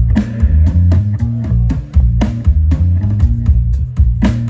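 Live three-piece boogie rock band playing: electric guitar, bass guitar and drum kit, with a moving bass line and a steady beat of drum hits about twice a second.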